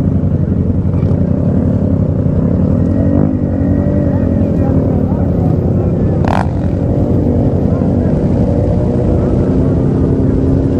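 Several motorcycle engines running and revving together as a big pack of street bikes rides and bunches up at low speed. A single short, sharp pop stands out about six seconds in.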